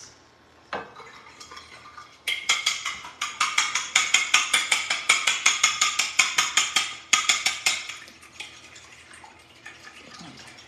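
A fork beating eggs in a glass bowl, its metal tines clicking rapidly against the glass at about six strokes a second. The beating starts about two seconds in, after a single knock, and grows fainter for the last couple of seconds.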